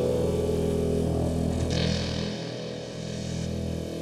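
ASM Hydrasynth playing a sustained ambient drone, several steady pitches held together in the low and middle range. A brighter, hissy layer joins a little under two seconds in.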